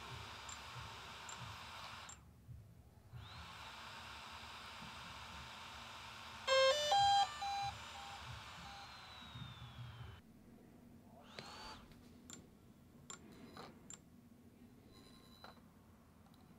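DJI Mavic Air 2 booting on the pre-update firmware: its cooling fan whines up and runs fast with a steady hiss, a short run of loud startup beep tones sounds about six and a half seconds in, and the fan whine falls away and stops about ten seconds in. After that only a few faint clicks and soft tones.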